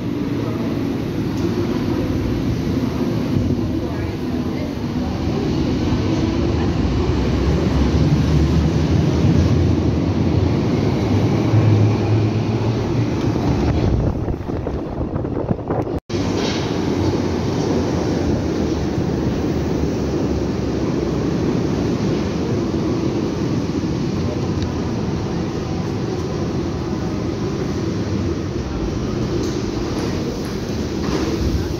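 Berlin U-Bahn train pulling out of an underground station. Its low rumble builds for several seconds and then fades. After a sudden cut there is steady station noise with voices on the platform.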